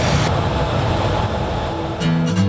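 Loud, steady roar of vehicle noise, the kind of din that drowns out a phone call.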